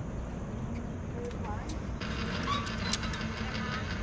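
Faint voices murmuring in the background over a steady low rumble, with a few light clicks.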